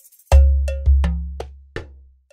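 Soundtrack percussion: about six sharp, ringing struck hits in under two seconds, the first and third landing on a deep bass boom that fades away, after a brief silent gap.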